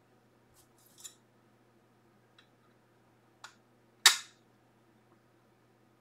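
Faint handling rustles and light clicks, then one sharp snap about four seconds in: a magnetic one-touch card holder being closed over a trading card.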